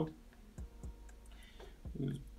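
A few faint, sparse clicks in a quiet pause, then a man's voice starting just before the end.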